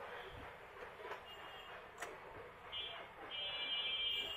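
A high, steady buzzing tone comes in faintly about a second in, then more strongly for the last second or so. A few faint clicks come from handling small parts.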